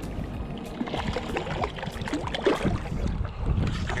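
Wind on the microphone over water sloshing in the shallows, with short splashes and clicks as a small hooked snook is brought in close to the bank.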